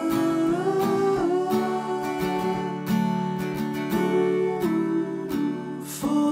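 Two acoustic guitars playing together in an instrumental passage, steady picked notes and chords.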